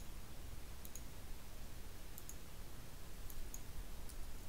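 Faint computer mouse clicks in three quick pairs: one about a second in, one around two seconds, and one near the end. A steady low hum runs underneath.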